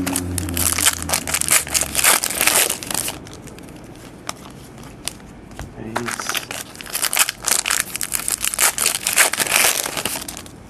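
Trading-card pack wrappers crinkling and tearing as packs are handled and opened by hand, in two bursts with a quieter stretch of a few clicks around the middle.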